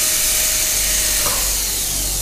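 Low-speed dental handpiece with a blue-ring contra-angle running a fissure bur into a plastic model molar to widen the cavity preparation, a steady hiss.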